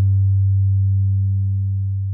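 A held low guitar note or chord ringing out at the end of the instrumental intro: its brighter overtones die away early, leaving a steady low hum that slowly fades.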